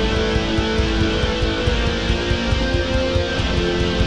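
Instrumental black metal: distorted electric guitars with long held notes over a rapid, dense beat in the low end.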